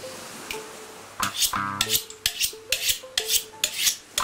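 Kitchen knife being honed on a steel rod: quick, rhythmic scraping strokes of the blade along the steel, a single stroke early and then a steady run from about a second in, each with a short metallic ring.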